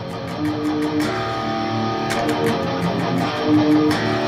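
Electric guitar tuned to drop D playing a palm-muted heavy rock riff: quick, even picking for about the first second, then looser strokes.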